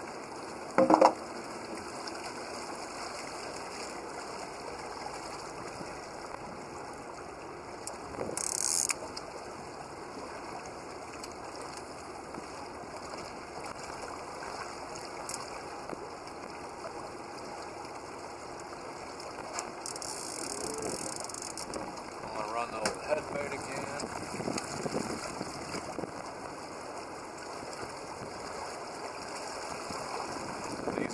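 A fishing reel's clicker ratcheting as line is pulled off the rod by hand, over a steady background hiss. A sharp knock comes about a second in.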